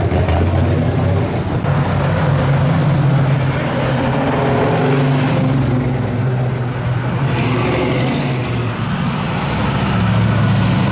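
Engines of classic and muscle cars running as the cars drive slowly past one after another, a steady low engine note that shifts in pitch and character each time a different car takes over.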